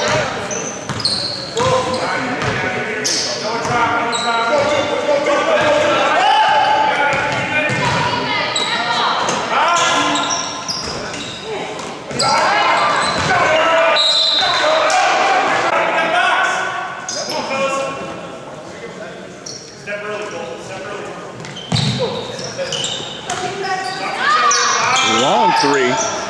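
Gym sound of a basketball game: a ball bouncing on the hardwood court among the calls and chatter of players and spectators, echoing in the large hall. It quiets for a few seconds past the middle.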